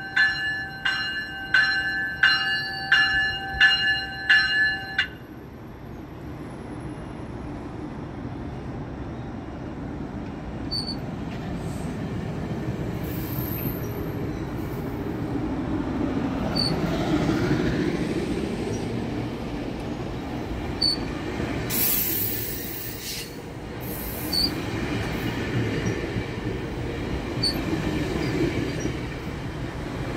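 A GO Transit bilevel commuter train's bell rings about twice a second, then stops about five seconds in. The train pulls out, its coaches rumbling and clattering past, with high wheel squeals about halfway through and a louder one a few seconds later.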